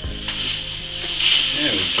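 Granulated sugar poured from its bag through a plastic funnel into a plastic water bottle: a hiss of running grains that swells in the second half.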